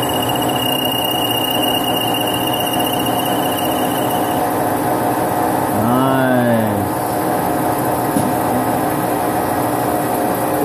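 1976 Hardinge automatic lathe running by itself, a steady machine drone as its tooling works a part under coolant. A thin, high, steady squeal rides over it for the first four seconds.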